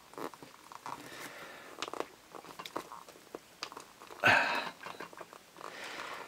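The serrated edge of a small plastic toy tool sawing and scraping at a plastic toy figure's body, making irregular short clicks and rasps, with one louder rasp a little past four seconds in. The edge does not cut through.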